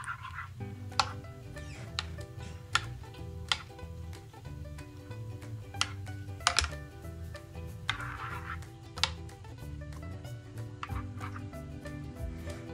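Soft background music with sustained low notes, with a metal spoon clinking and scraping against a ceramic bowl as a thick yogurt and sour cream mixture is stirred: sharp clinks at irregular intervals, roughly a second apart.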